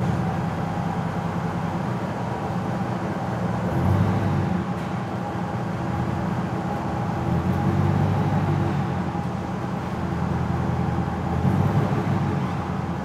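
Ford SVT Lightning pickup's supercharged V8 running steadily at low revs under load as it pulls a car with seized brakes on a tow strap, swelling a little about four seconds and eight seconds in.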